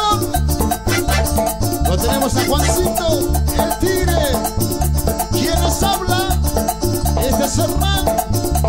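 A live guaracha band playing dance music, with a steady bass pulse, fast even percussion ticks and a melody line over the top.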